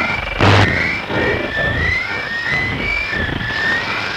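Recording of the Backwards Music Station radio signal: creepy noises of short warbling tones gliding up and down, a few a second, over a hiss of radio static, with a sudden burst of noise about half a second in.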